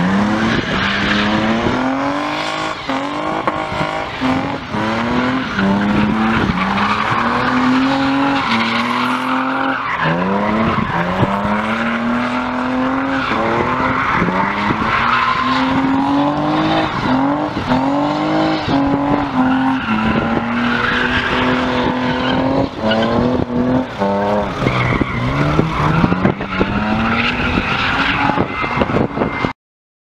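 A car engine revved hard over and over, its pitch climbing and falling about once a second, with tyres squealing as the car spins donuts on tarmac. The sound cuts off abruptly just before the end.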